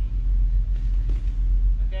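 A steady low rumble, a constant background drone with nothing else prominent over it.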